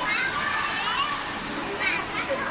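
A crowd of children playing and chattering, with high-pitched squeals right at the start and again near the end.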